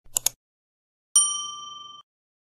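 A quick double click near the start, then about a second in a single bright bell ding that rings on and fades away: a notification-bell sound effect.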